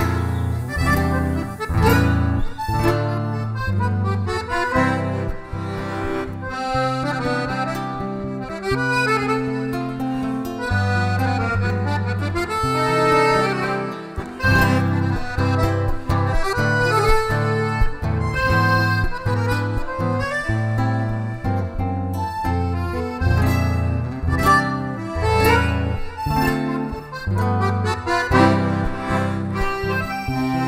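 Button accordion (gaita ponto) playing an instrumental tune, accompanied by an acoustic guitar.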